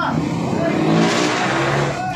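A motor vehicle passing close by on the street: engine and road noise swelling to a peak about a second in, then easing off.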